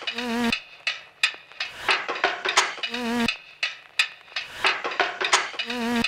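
Glitchy electronic sound effects: a fast, irregular run of sharp clicks and ticks, with a short wobbling buzz that comes back about every three seconds, three times in all.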